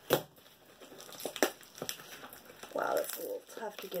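Scissors snipping into a plastic shipping mailer: a sharp snip right at the start and a couple more over the next two seconds, followed by the crinkle of the plastic packaging being handled.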